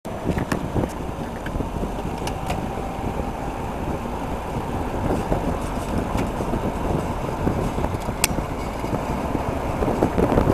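Steady wind and road noise from a vehicle rolling along at cycling pace, with a few sharp clicks, the loudest about eight seconds in.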